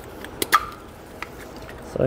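Plastic wiring-harness connector being unplugged: two sharp plastic clicks close together about half a second in, then quiet handling.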